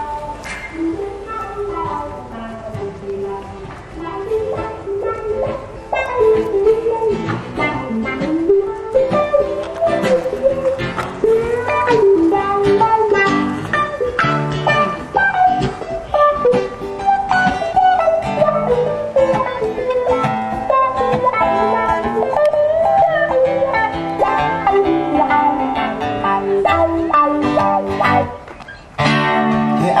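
Acoustic guitar music: a picked, melodic instrumental with no singing, dropping out briefly near the end.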